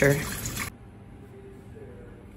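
Lemon juice trickling and dripping through a mesh strainer into a glass pitcher. The sound stops abruptly under a second in, leaving quiet room tone.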